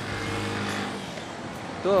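A road vehicle's engine running steadily amid street noise, a low hum that eases off about a second and a half in.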